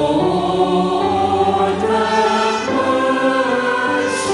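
A mixed choir of men and women singing together in harmony, holding long notes that change every second or so.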